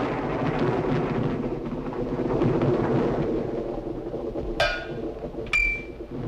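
Rumbling percussion, drum-roll-like, running steadily for about four and a half seconds, then a sharp attack and a couple of short pitched notes near the end.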